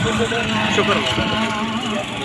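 Several people talking at once over one another, with a vehicle engine running steadily underneath.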